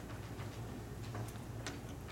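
Chalk writing on a blackboard: a series of light ticks and short scratches as letters are written.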